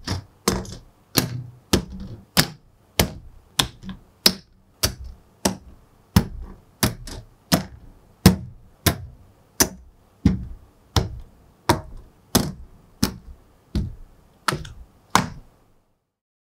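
Plastic model-kit runners set down one after another on a cutting mat, each landing with a sharp plastic clack, about one and a half clacks a second in an even rhythm.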